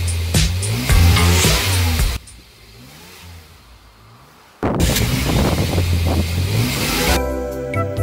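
Car engines revving and accelerating hard over a hip-hop beat, loud for about two seconds, dropping quieter for a couple of seconds, then loud again. Near the end a gentler piece of music takes over.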